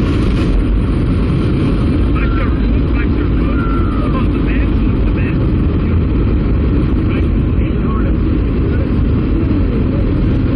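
Steady loud engine and rushing-wind noise inside a skydiving plane's cabin with the jump door open, with faint voices calling out over it.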